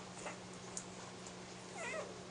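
A newborn Airedale Terrier puppy gives a short, wavering squeak near the end, with a fainter squeak early on and a few faint clicks.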